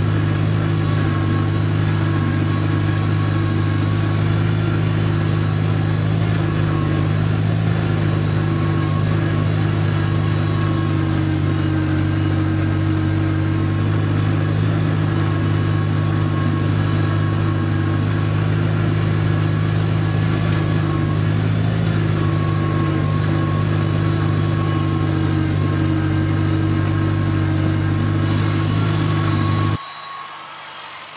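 1953 Farmall Cub's four-cylinder flathead engine running at a steady speed as the tractor drives, heard close up from on board the tractor. The sound drops away abruptly just before the end.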